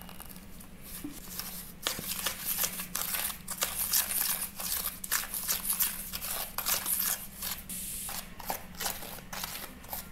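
A wooden spoon stirring and scraping a gritty wet paste of baking soda and detergent powder against a plastic tray, in irregular scratchy, squishing strokes that pick up about two seconds in.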